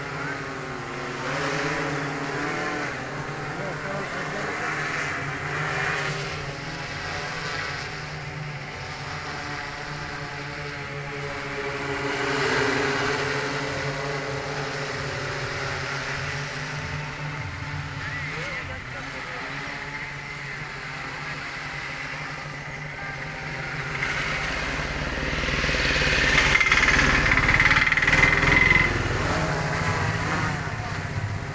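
Multirotor agricultural spraying drone hovering and flying low over a paddy field while spraying, its rotors making a steady buzzing hum with voices in the background. It gets louder over the last few seconds as it comes closer.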